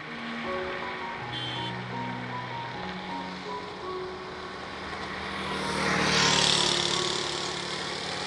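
Background music with held notes, and a motorcycle passing close by: its noise swells about five seconds in, peaks, and fades away.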